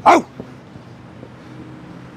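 A single short, loud cry that falls in pitch right at the start, over steady street background noise.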